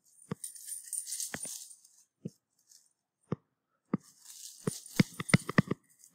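A stylus tapping and scratching on a tablet screen while writing by hand. There are scattered sharp taps, with patches of faint scratchy hiss about half a second in and again around four seconds in, and a quick run of taps near the end.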